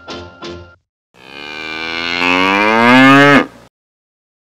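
The closing chords of theme music end in the first second, then a cow gives one long moo of about two seconds, rising a little in pitch and growing louder before it cuts off abruptly.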